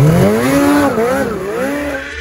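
Polaris Patriot Boost turbocharged two-stroke 850 snowmobile engine revving loudly. Its pitch climbs steeply right at the start, then rises and falls several times as the throttle is worked.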